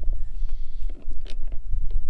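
Steady low rumble with a few faint clicks in the second half.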